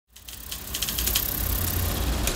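Film projector sound effect: a low motor rumble with short rattling clicks, fading in from silence over the first half second.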